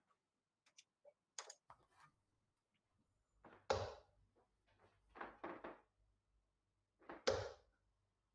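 Steel-tip darts hitting a bristle dartboard: two sharp, short thuds about three and a half seconds apart, with a few faint clicks and shuffles in between.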